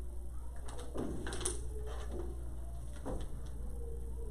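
Quiet classroom room tone: a steady low hum with a few faint, scattered rustles and knocks while students draw graphs on paper, and a faint drawn-out tone in the second half.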